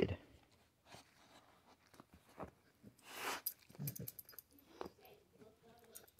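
Soft, scattered rustles and clicks of a pit bull mouthing and chewing a shredded plush dog toy, with one short noisy rush about three seconds in.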